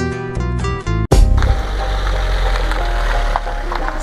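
Acoustic guitar music cuts off abruptly about a second in. A steady loud rush of wind and vehicle noise follows, buffeting a camera mounted on the outside of a van.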